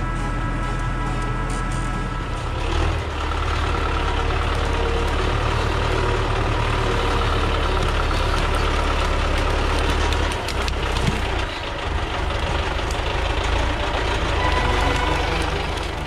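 MTZ Belarus 820 tractor's four-cylinder diesel engine running steadily under working load, its note growing louder about three seconds in.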